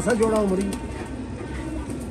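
A man's voice briefly near the start, with domestic pigeons cooing in the background over a low steady rumble.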